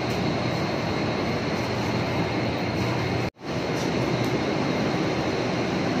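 Steady, even background rumble with a low hum, like ventilation or traffic noise, broken by a brief drop-out at an edit just past halfway.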